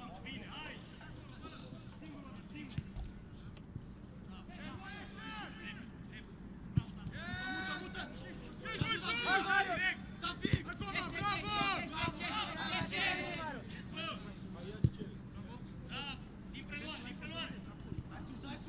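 Footballers shouting calls to each other across an outdoor pitch, loudest in the middle of the stretch. Several sharp thuds of a football being kicked come through, the loudest about fifteen seconds in.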